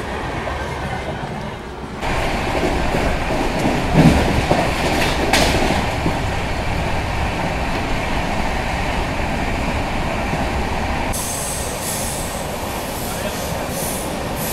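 Indian passenger train coach running on the rails, heard from the open doorway: a steady rumble and rattle of wheels on track that gets louder about two seconds in, with a sharp knock about five seconds in. In the last few seconds a high-pitched wheel squeal rides over the running noise.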